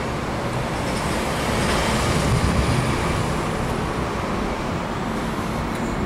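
Steady wash of road traffic noise with no distinct events, swelling slightly in the middle.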